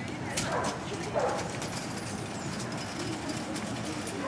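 A dog gives two short yelps, about half a second and a second in, the second the louder, over the steady murmur of an outdoor crowd.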